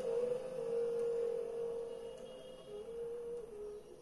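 A pure, sine-like electronic tone from a sound installation, holding near one pitch and shifting up and down in small steps, with a faint higher tone alongside; it fades away toward the end.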